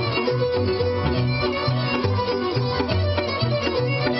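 Instrumental Romanian folk dance music, played between the sung verses of a song, over a steady bass beat about twice a second.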